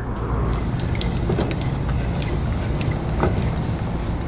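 Tow vehicle's engine running steadily at low speed as the truck backs up to the trailer, a continuous low hum with a couple of faint clicks.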